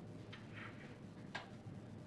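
Pen writing on paper: a few faint, short strokes as a word is written by hand, one a little sharper than the rest near the end.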